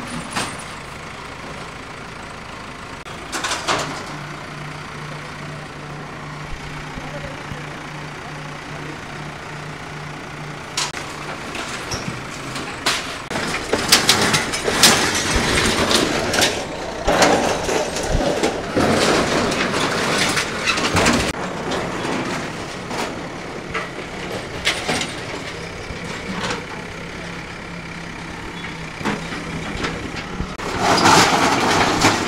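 Heavy demolition machinery working: a steady engine hum with repeated knocks and crashes, busiest and loudest through the middle, with voices in the background.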